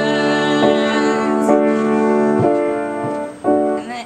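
Piano chords held and re-struck about three times, each ringing on before the next, with the sound thinning out near the end.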